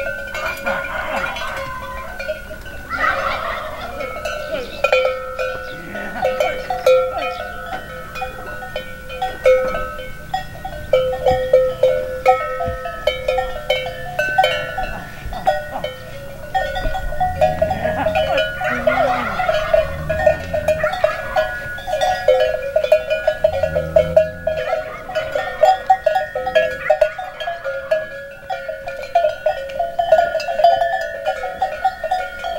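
Bells on cattle clanking and ringing continuously as the herd shifts about in a wooden corral, with a few deep cattle calls in the second half.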